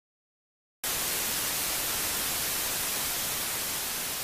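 Steady static hiss, like white noise, cutting in abruptly a little under a second in after dead silence.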